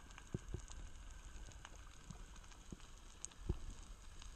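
Underwater ambience on a coral reef: scattered faint crackling clicks, a few louder ones about three and a half seconds in, over a steady low rumble of water on the microphone.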